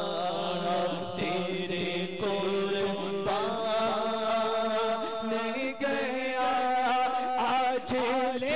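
Naat recitation: a man's voice chanting a melodic, unaccompanied-style line with long held notes that bend and waver, over a steady low hum.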